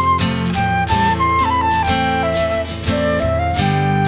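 Flute playing a slow melody that steps downward, then rises to a held note near the end, over fingerpicked acoustic guitar.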